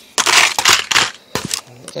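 Plastic blister packs and packing paper crinkling and rustling as items are dug out of a cardboard box, with a few sharp clicks of plastic. The rustling is loudest in the first second and thins to scattered clicks.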